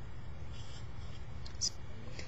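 Felt-tip marker writing on paper: faint scratchy strokes, with one short sharper stroke near the end, over a low steady hum.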